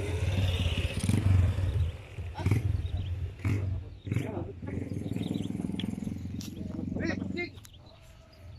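A man's voice over a low rumble, the voice holding a long steady tone for a few seconds in the second half.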